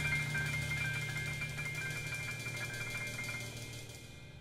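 A jazz quartet's final chord at the end of a tune, its held notes ringing steadily and slowly fading away.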